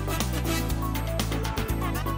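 Opening theme music of a TV programme, with a steady beat over a moving bass line.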